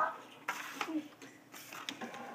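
The end of a child's exclaimed "Oh!", then faint handling sounds: a couple of soft taps and rustles as a hand moves over the table and picks up a foil minifigure pack.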